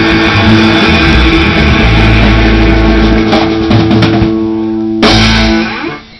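Live rock band of electric guitars, bass guitar and drum kit playing the close of a song: a held chord for about five seconds, then a final full-band hit that dies away just before the end.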